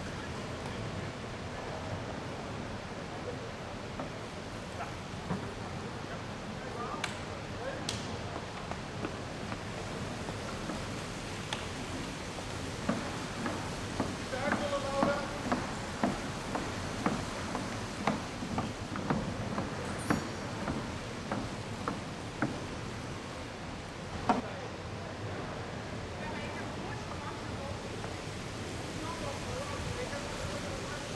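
Indistinct talking over a steady background hum in an indoor velodrome, with scattered short clicks and knocks in the middle.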